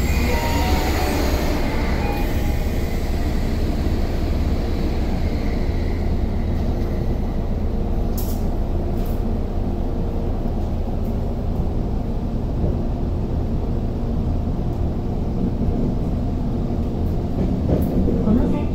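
Steady running noise inside a commuter train: low rumble of wheels on rail with a faint steady motor hum. For the first two or three seconds a passing express train on the next track adds a rushing sound that fades away.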